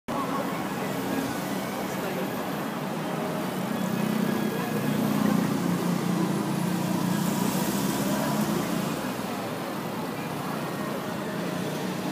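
City street ambience: steady traffic noise mixed with indistinct voices, a little louder in the middle.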